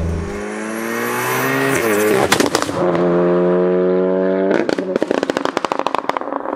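Tuned 2.0-litre turbocharged four-cylinder of a 750 hp VW Golf R accelerating hard through two rising pulls, each ending at a gear change. Sharp exhaust pops come at the first shift, and a rapid string of crackles and pops follows near the end.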